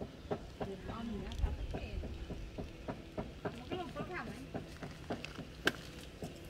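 Faint voices talking in the background, with scattered small clicks and knocks throughout and one sharper click near the end.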